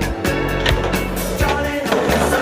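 Music track with a steady drum beat over a skateboard rolling on concrete, with two sharp clacks of the board.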